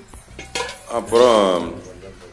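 A few light clinks and knocks of sticks and a brass pot being handled at an open wood fire, then a short word or two from a person's voice about a second in.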